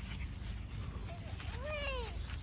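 A toddler's wordless, high-pitched vocal calls: a brief one about a second in and a longer one near the end that rises and then falls, over a steady low rumble.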